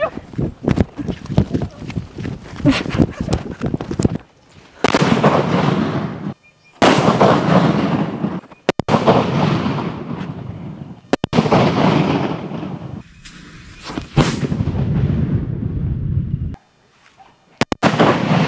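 A string of small coconut bombs (thengai vedi) exploding one after another: a quick run of sharp cracks in the first few seconds, then about five loud bangs, each trailing off in a second or two of rumble, and a last sharp crack near the end.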